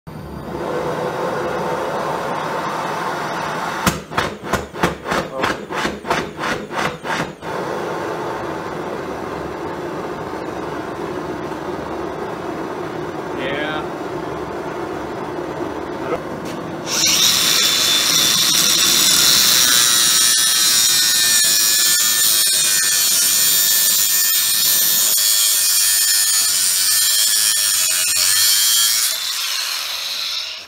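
Small air-fed micro burner running with a steady hiss. For a few seconds early on it pulses about four times a second while the flame is still unstable. About 17 seconds in it jumps to a much louder, brighter hiss with a steady whistling tone, which falls away near the end.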